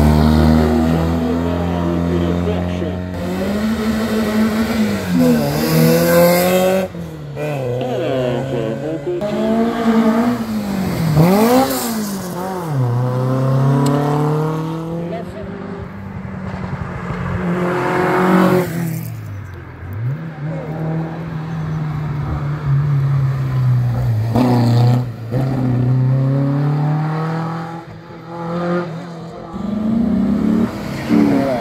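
Competition cars accelerating hard up a hill-climb road one after another, the engine note climbing and dropping back with each gear change. At the start it is a classic Fiat 500 Abarth's small rear engine going past.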